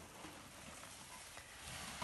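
Faint rustling and crumbling of potting soil as a monstera's root ball is handled with plastic-gloved hands.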